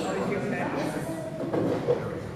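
Ice hockey rink ambience: several voices talking in the background over a steady noisy rumble from the hall and the play on the ice. A single short, sharp knock comes near the end.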